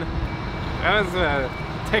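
A vehicle's reversing alarm: a high steady electronic tone held for over a second, over a low engine rumble.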